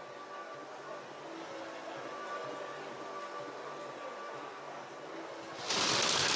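Faint, muffled sound from a water-soaked broadcast microphone that is not working, with some steady tones, then a sudden loud burst of hissing static about five and a half seconds in.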